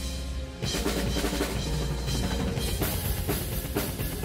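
Drum kit on a live symphonic-metal drumcam recording: fast drumming of snare and bass drum with rapid fills, mostly single strokes, the band's music underneath. The drumming gets louder and busier about half a second in.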